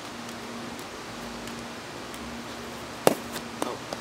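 Steady background hiss with a faint hum. About three seconds in comes a single sharp knock, then a few light clicks, as a person shifts and settles in a folding lawn chair.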